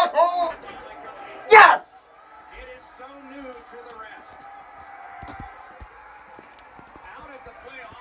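A young man's short excited vocal outbursts in the first couple of seconds, then a low steady murmur of a TV hockey broadcast with crowd noise, broken by a few dull knocks as the camera is picked up and handled.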